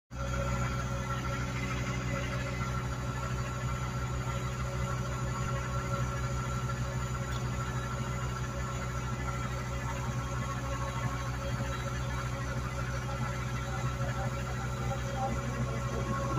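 Vehicle engine idling steadily, a constant low hum.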